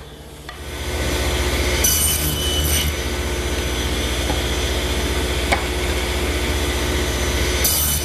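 Table saw spinning up and then running steadily while redwood slats are pushed through the blade for tenon shoulder cuts. The blade cuts through the wood twice, about two seconds in and again near the end.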